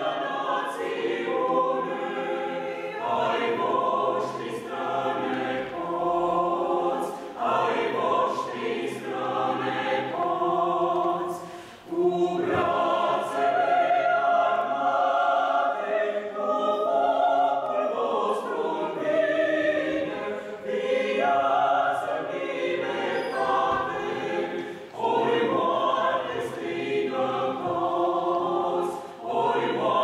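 A small mixed choir of men's and women's voices singing a cappella in parts, with short breaks between phrases about twelve seconds in and again near twenty-five seconds.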